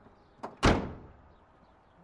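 Van's driver door slammed shut: a light click, then one loud bang that dies away quickly.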